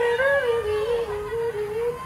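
A single melodic line on stage: one held pitch that wavers up and down in small steps between neighbouring notes, fading near the end.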